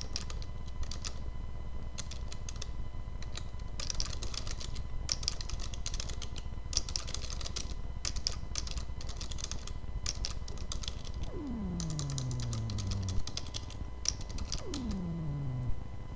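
Computer keyboard typing in quick runs of keystrokes with short pauses between. Near the end, two falling tones, each about a second and a half long, sound over the typing.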